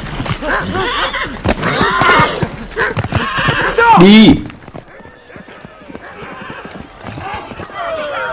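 A horse galloping, its hoofbeats mixed with neighing, while dogs bark and yelp in pursuit. A loud cry about four seconds in is the loudest moment, and the sound then drops to a quieter stretch.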